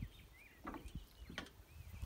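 Faint birdsong: a few short chirps, with two soft clicks, the first about two-thirds of a second in and the second about a second and a half in.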